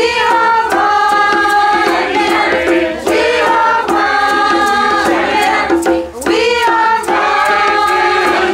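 Community choir singing a harmonised song together in held phrases, with short breaks about three and six seconds in. A djembe hand drum keeps a light, steady beat underneath.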